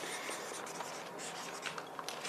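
Pens scratching on paper notepads as several people write at the same time, quiet and steady, with a few small ticks of pen and paper.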